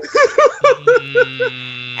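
A person laughing in a quick run of about eight short, high 'ha' pulses that come faster and fade, with another voice holding a long, steady tone underneath.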